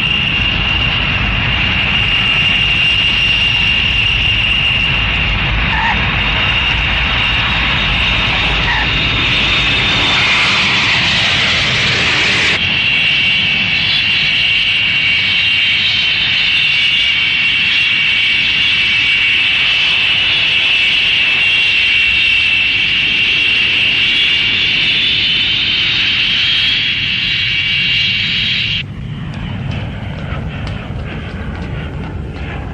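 Jet airliner engines running with a steady high-pitched whine over a rushing noise. About twelve seconds in, the sound changes abruptly to a slightly lower whine made of several tones, as a rear-engined jet taxis. It drops away sharply just before the end.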